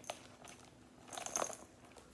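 Soft handling noises of a phone being slipped into a small leather crossbody bag: a sharp click at the start, then a short scrape and rustle about a second in.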